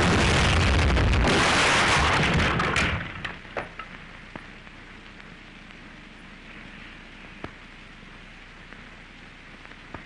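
An artillery shell exploding close by on an early sound-film soundtrack. One loud, noisy blast lasts about three seconds, then dies away through a few scattered clicks into faint hiss.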